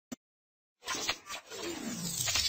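Logo-intro sound effects: a short click, then about a second in a run of noisy whooshes with a sweep sliding down in pitch.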